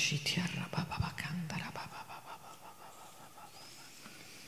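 A woman's voice speaking quietly, murmured words through the first two seconds or so, then faint room tone.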